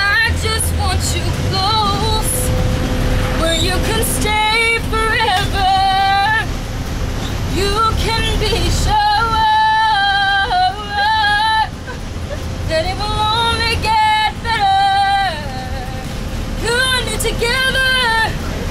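A girl singing loudly without words that the recogniser caught, holding long notes that bend in pitch, over the steady low rumble of a school bus engine and road noise inside the cabin.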